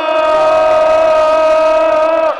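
A loud, steady horn-like note on one pitch, held for about two seconds and then cut off sharply, louder than the crowd and music around it.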